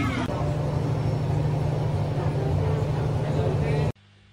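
Outdoor street noise: a steady traffic rumble with a low hum, and voices in the background. It cuts off suddenly near the end.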